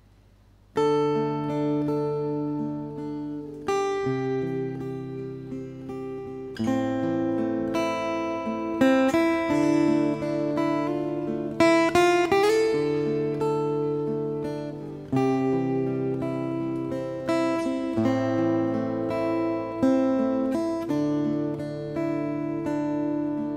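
Solo acoustic guitar playing a slow instrumental introduction. It comes in about a second in, and the ringing chords change every two to three seconds, with a rising slide near the middle.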